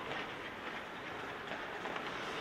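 Hockey skate blades scraping and carving across the ice, with the steady echoing hiss of the rink and a few faint ticks.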